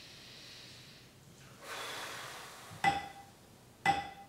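A long breath in the still room, then two strikes of a small meditation bell about a second apart near the end, each ringing briefly at one clear pitch. This is the bell sounding to open a period of zazen.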